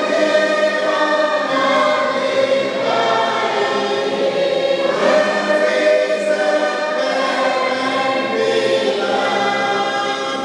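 Choir singing a hymn, many voices holding long notes, with short breaks between phrases.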